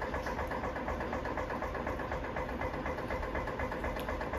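A motor running steadily with a fast, even pulse.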